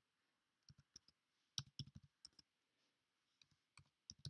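Faint typing on a computer keyboard: a scattered run of light key clicks with uneven gaps.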